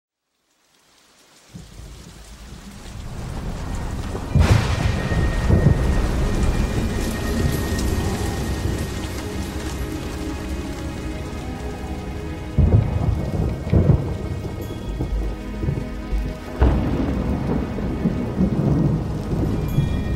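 Recorded rainstorm sound effect opening a hip-hop track: steady heavy rain fades in after a second or so of silence, with several loud claps and rolls of thunder.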